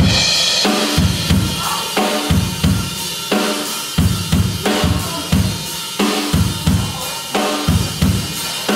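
Blues band playing live: drum kit with heavy bass drum and snare hits in a steady beat, under electric guitar and electric bass. The band comes in suddenly at full volume.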